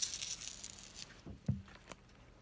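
Packaging rustling and crinkling as it is handled, followed by two soft knocks and a short click.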